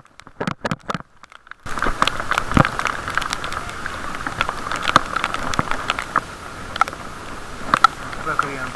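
Rain pattering and ticking on a camera's waterproof case, heard muffled, over a steady hiss. The first second and a half is much quieter, with only a few scattered ticks, before the hiss comes in.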